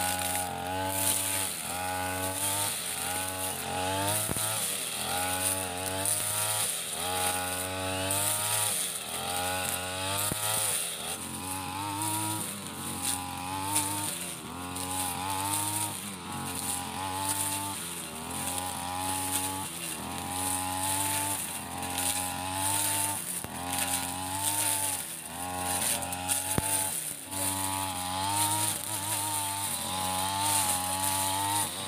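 Tanika BG328 backpack brush cutter with a metal blade: its small two-stroke engine runs loud and high, its pitch dipping and rising again about once a second as the blade cuts into the tall grass.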